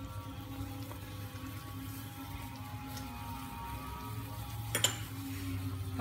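Fish soup simmering in a steel wok: a faint steady bubbling over a low hum. There is one sharp metallic clink, likely a ladle against the wok, about five seconds in.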